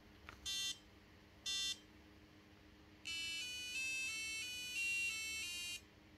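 BBC micro:bit's built-in speaker plays two short high countdown beeps, about half a second and a second and a half in. From about three seconds in to near the end, a second micro:bit plays a quick tune of about eight short high notes, the sound effect that marks the ghost image arriving over the radio link.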